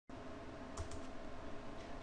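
Faint steady background hiss and low hum of a quiet recording, with two faint clicks a little under a second in.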